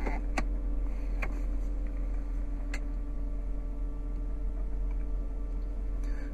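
Steady low hum inside a car's cabin, with a few faint light clicks spread through it.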